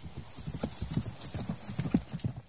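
Horse hoofbeats sound effect: a quick, uneven run of clip-clops, about six a second, as of a horse running.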